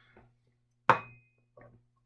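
A glass beaker set down on a tabletop: one sharp knock about a second in with a short ringing tail, followed by a fainter small knock.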